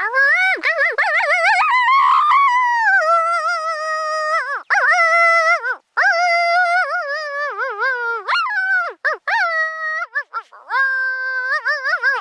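A series of loud, wavering howls that glide up and down, broken by short yipping passages and a few brief pauses, ending on one long held howl. They are made to call coyotes and draw a reply.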